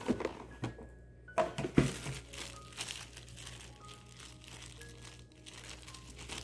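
Thin clear plastic bag crinkling as it is handled, with a few sharp knocks in the first two seconds as thread cones are moved about in a plastic basket.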